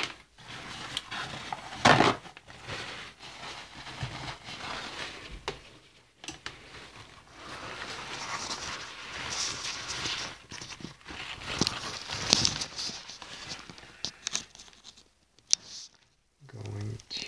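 Close handling noise: irregular rustling and crinkling with light knocks right at the microphone, including a louder burst about two seconds in, as hands work around the phone.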